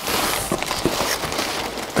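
Plastic wrap and paper packing rustling and crinkling in a cardboard box as a stack of laser-cut plywood helix curves is gripped and lifted, with a few small clicks.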